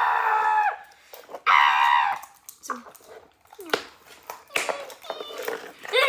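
Two loud, high-pitched wordless vocal cries, each under a second and about a second and a half apart, followed by a few softer, shorter vocal sounds.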